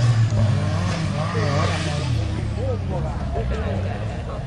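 Off-road 4x4 engine running hard through a dirt course, its low note rising and falling as the driver works the throttle.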